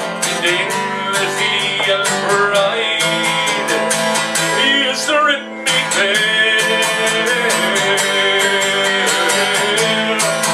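Two acoustic guitars strummed and picked together in an instrumental passage, with a brief drop in level just past five seconds in.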